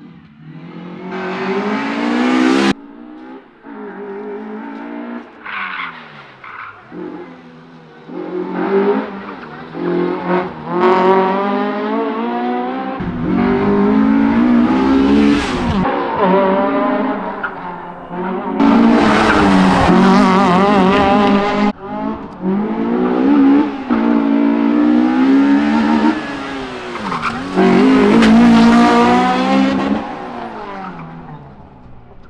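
Honda Civic rally car's engine revving hard, the revs climbing and dropping again and again through gear changes and tight corners. It comes in several separate passes with abrupt breaks between them.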